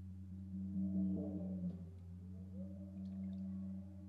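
Guitar and percussion playing soft, sustained ringing tones in a contemporary piece: notes hold and overlap, one pitch slides upward a little past the middle, and a few light high ticks sound near the end.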